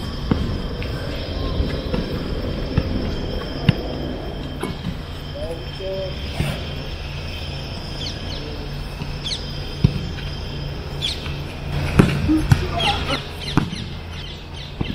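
A football being kicked: a few sharp thuds of boot on ball, the loudest about twelve seconds in, over a steady low background noise. Birds chirp in the second half.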